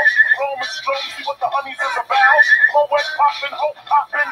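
A high-pitched voice in quick, sing-song phrases with a few briefly held notes, with almost no bass.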